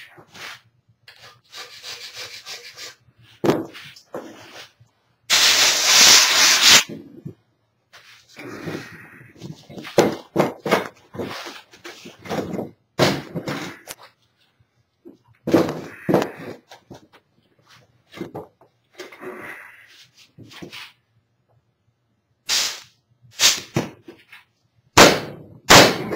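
A black-headed rubber mallet knocking on a heavy plaster casting mould to jar it loose from the canopy plug: scattered single knocks, then a quick run of blows in the last few seconds. About five seconds in there is also a loud rushing noise lasting about a second and a half.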